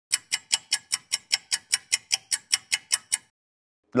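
Steady ticking sound effect, about five sharp ticks a second, that stops about three seconds in.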